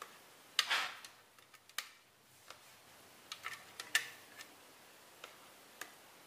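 Irregular light clicks and taps of a spatula scraping ground mackerel paste out of a blender jar into a plastic bowl, a few scattered knocks a second apart with a short scraping rustle about half a second in.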